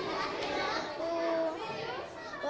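A group of children chattering in the background, with one child's voice drawing out a single held sound for about half a second, roughly a second in.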